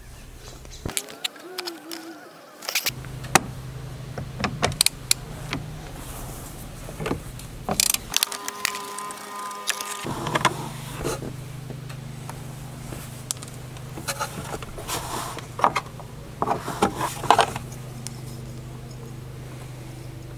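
Metal clicks and clinks of a socket wrench with a 13 mm socket working the battery's securing-bracket bolt loose. The bursts of clicking are irregular, some of them in quick clusters.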